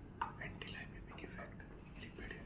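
Faint, low speech, too quiet to make out: someone in the room asking a question softly.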